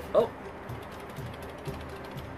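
Loose metal washers rattling inside the epoxied head of a foam Nerf axe as it is shaken, a run of quick faint clicks: the washers have worked loose enough to move.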